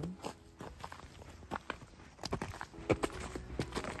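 Footsteps on a gravel path strewn with dry fallen leaves, a handful of irregular steps, most of them in the second half.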